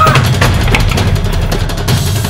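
Loud soundtrack music with a driving drum-kit beat.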